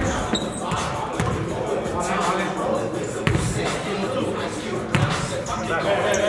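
A basketball bouncing on a hardwood gym floor during a game, a handful of separate thuds a second or two apart, with indistinct players' voices echoing in the hall.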